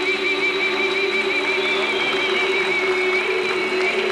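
Live band music, with one long note held with a steady vibrato through most of the stretch over sustained accompaniment.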